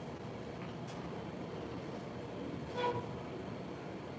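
Steady low background hum of room noise, with one brief, faint pitched tone about three seconds in.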